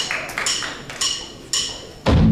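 Drummer's count-in: four sharp clicks about half a second apart, each with a brief bright ring.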